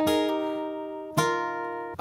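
Steel-string acoustic guitar, capoed, played with hybrid picking: a chord on the upper strings rings out and fades, then a second chord is struck a little over a second in and left to ring.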